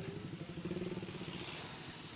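A motor vehicle engine running close by in street traffic, its low drone fading after about a second.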